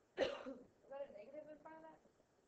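A woman coughs once, with a sudden start, then makes about a second of short voiced sounds.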